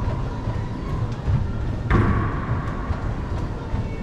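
Steady low rumble in an enclosed racquetball court, with a single sharp hit about two seconds in that rings briefly off the hard walls.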